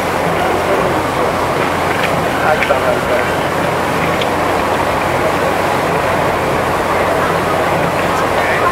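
Busy city street noise: a steady wash of traffic with indistinct voices of passers-by.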